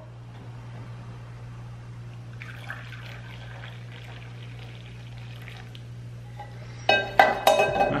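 Hot coffee poured from a small enamel mug into a glass cup, a faint trickle of liquid. A few sharp ringing clinks come near the end.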